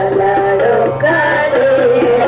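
Indian devotional song: a voice singing a wavering melody over a steady low drone, with accompaniment.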